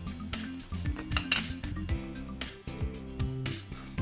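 Soft background music, with a few light clinks and taps of a utensil against a mixing bowl as marinade ingredients are added and stirred.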